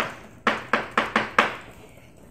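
Chalk writing on a blackboard: a quick series of about seven sharp taps and short scratches as the words are written, stopping about a second and a half in.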